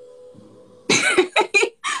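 A woman laughing in a few breathy bursts, starting about a second in.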